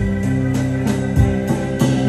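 A live band playing: an organ-sounding keyboard holds sustained chords over a moving bass line, with drum-kit hits marking the beat.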